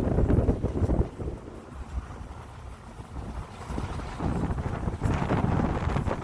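Road and engine rumble inside a moving Toyota van, with wind buffeting the microphone. It quietens for a couple of seconds midway, then grows louder again.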